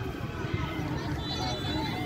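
Faint voices of spectators and young players calling out around an outdoor football pitch, over a steady low background rumble.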